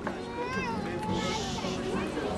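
Children and adults chattering and calling out in an outdoor crowd, with no one voice clear. A short hiss sounds a little past halfway.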